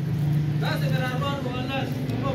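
A steady low hum runs throughout, and a voice speaks over it from about half a second in until near the end.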